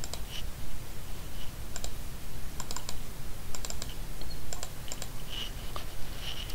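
Clicking at a computer: short, sharp clicks in small groups of two to four, about once a second.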